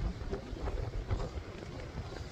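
Wind buffeting the microphone: an uneven low rumble of gusts with no distinct sound on top.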